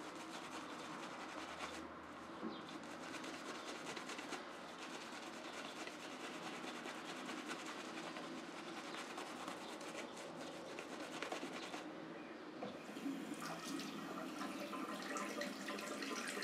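Shaving brush swirling shaving-cream lather over a bearded cheek and chin: a steady, quiet, wet brushing and rubbing.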